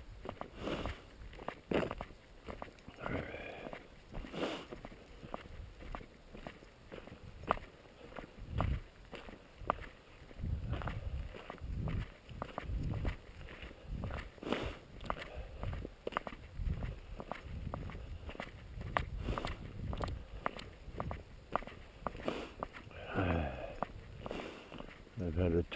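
Footsteps crunching on a gravel dirt road at a steady walking pace.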